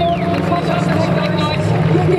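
Drift cars' engines held at high revs as two cars slide in tandem, the engine note holding steady with small shifts in pitch. Voices can be heard over it.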